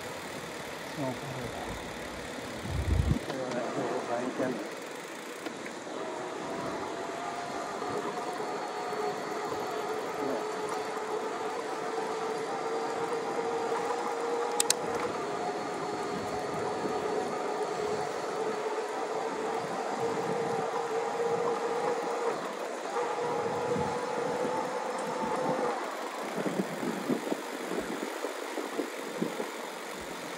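Electric-assist bicycle drive motor whining steadily under assist for about twenty seconds, its pitch creeping slightly higher, over wind and tyre noise. There is one sharp click about halfway through.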